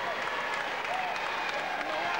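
Boxing crowd applauding, a steady wash of clapping with a few voices heard faintly over it.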